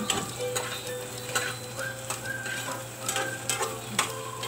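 Spatula stirring and scraping through sliced longganisa sausage and tomatoes sizzling in a frying pan, with irregular clicks of the utensil against the pan.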